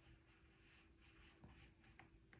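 Faint scratching of a black colored pencil drawn across watercolor paper in short repeated strokes.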